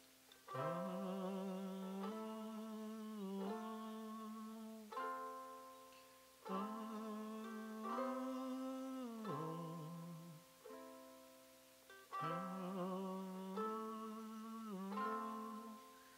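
Wordless Indian devotional vocalization (aalaap) sung as a string of long held notes with vibrato, bending between pitches, each note starting suddenly and fading.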